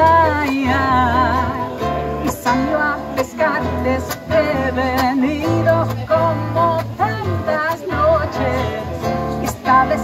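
Live Latin American song played by a duo: a nylon-string classical guitar strummed, a violin-shaped electric bass guitar playing a walking bass line, and a woman's voice singing a wavering melody over them.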